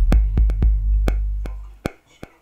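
Footwork beat in progress playing back from an MPC sampler: sharp drum-machine hits over a long, deep bass tone that fades away and stops near the end, leaving only a few scattered hits.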